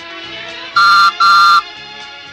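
Read-along record's page-turn signal: a postman's whistle tooting twice, two short, steady toots about half a second long each, over soft background music. It signals the reader to turn the page.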